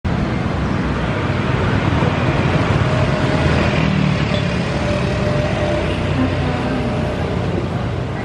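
Steady street traffic noise with a continuous low rumble of passing vehicles.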